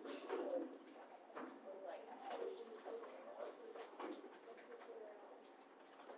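Faint, muffled voices talking quietly at a distance, too low for the words to be made out.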